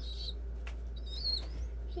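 A young pigeon squeaker giving tiny high-pitched begging peeps while being hand-fed: two short ones, one right at the start and another about a second in, with a faint click between them.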